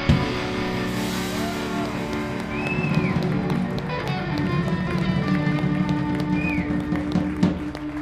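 Live band of electric guitar, acoustic guitar, bass guitar and drums holding long ringing chords over a sustained bass note, with a couple of bent high guitar notes, as the song winds down.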